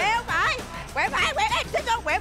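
Quick, high-pitched shouted speech over background music, with no other distinct sound.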